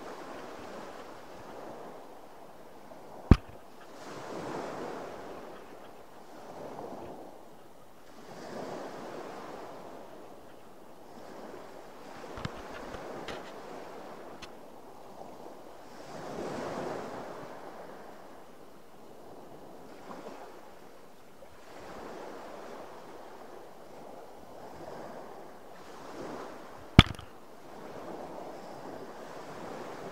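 Sea waves washing against the side of a boat, swelling and fading about every four seconds, with two sharp clicks, one about three seconds in and one near the end.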